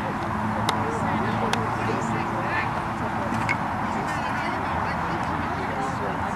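Outdoor background noise with scattered distant voices. A low steady hum runs through the first three and a half seconds, and a few faint sharp clicks sound.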